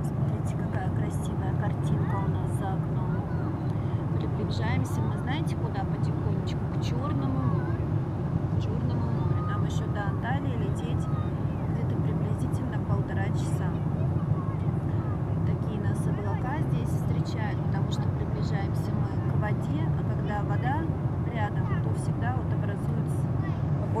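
Steady low drone of a Boeing airliner's cabin in flight, engine and airflow noise, with faint chatter of other passengers and a few small clicks.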